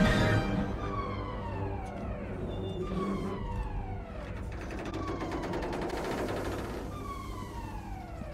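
A spaceship's alarm in a film soundtrack: a falling, siren-like tone repeating roughly once a second over a low steady hum.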